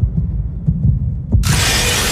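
Movie-trailer sound effects: a deep, uneven rumble with low thuds, then a sudden loud rush of hissing noise about one and a half seconds in.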